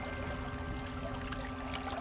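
River current running steadily around a wading angler, a soft even rush of water.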